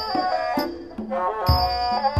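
Thai classical music: a so sam sai, the three-string Thai spike fiddle, bows a gliding melody over deep hand-drum strokes, the loudest about a second and a half in, with a high ringing cymbal tone.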